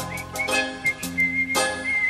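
A person whistling a few short notes and then one longer held note, over a band's accompaniment.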